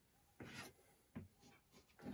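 Faint scratching of chalk drawn along a wooden ruler on a chalkboard, in a few short strokes.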